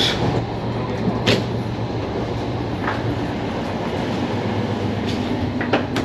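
Running noise of a moving Finnish sleeper train heard inside the carriage: a steady rumble with a low hum, and a few light clicks or knocks at intervals.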